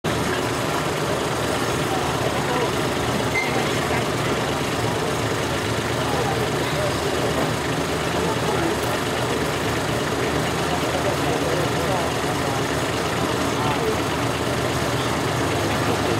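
Diesel pickup truck engine running steadily at low speed, hitched to a truck-pulling sled before its pull, with voices in the background.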